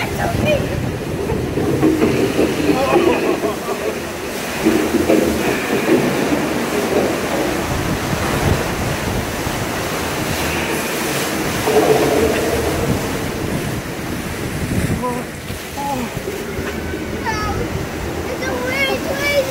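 Steady rushing water and a deep rumble around a river-rapids raft, with riders' voices and laughter breaking through at times.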